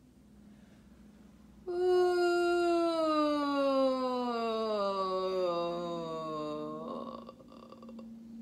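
A woman singing a slow, relaxed downward siren: one long vocal glide from the middle of her voice down to low in her range, starting about two seconds in and ending about a second before the end. It is an exercise for lowering and relaxing the larynx.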